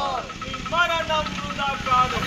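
Men's raised voices shouting slogans, with a low rumble of traffic underneath.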